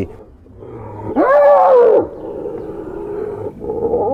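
Spotted hyena in a fight giving one loud yell that rises and falls over about a second, starting about a second in, then a fainter drawn-out moan.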